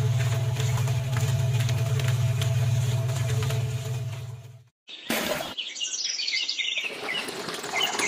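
A small motor hums steadily for about four and a half seconds and stops abruptly. After a brief gap, birds chirp over outdoor background noise.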